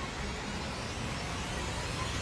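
A steady low rumbling drone with an even hiss above it, unchanging throughout.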